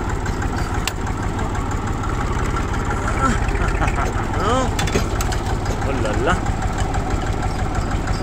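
Old tractor engine running steadily while the tractor drives slowly along, its firing heard as a rapid, even low pulse.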